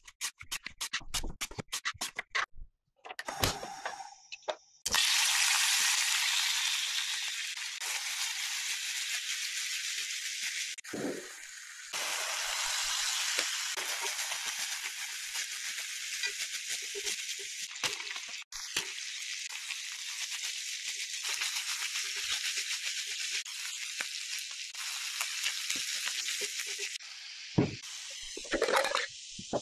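A handheld slicer cutting a vegetable in a quick run of strokes, then a steady sizzle of diced chicken frying in a small black pan, stirred with chopsticks.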